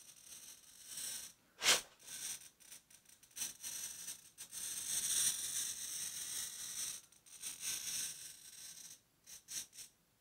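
Cheap wheel-type glass cutter scoring quarter-inch mirror glass: a gritty, high-pitched hiss that comes and goes in stretches, with a sharp click a little under two seconds in.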